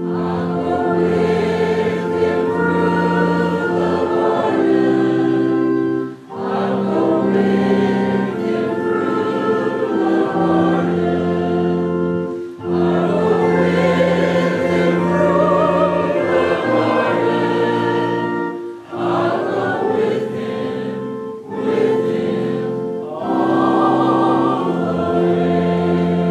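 Church choir singing a hymn over a sustained keyboard accompaniment, in long phrases with short breaks between them.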